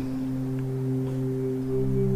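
Soft ambient background music of steady, sustained tones like a singing-bowl drone. A new lower note joins near the end.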